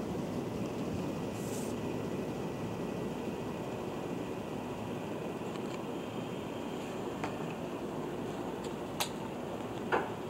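Steady low room hum, with a brief paper rustle about a second and a half in and a few faint clicks later as folded glossy cardstock pieces are handled and pressed together.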